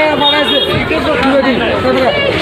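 Several people talking in conversation.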